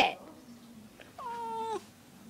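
A domestic cat gives one drawn-out meow a little over a second in, holding its pitch and then dropping at the end.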